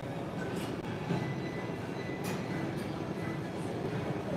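Gym floor ambience: a steady low rumble with a few faint clicks, about two seconds in and again near the end.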